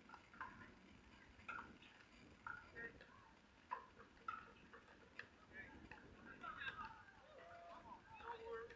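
Faint court ambience: scattered sharp clicks of pickleball paddles hitting the ball, with faint distant voices.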